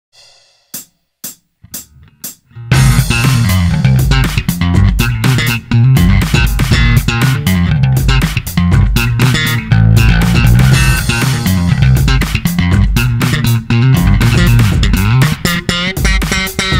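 Four sharp clicks count in, then a slapped electric bass plays a funky, rhythmic line over drums.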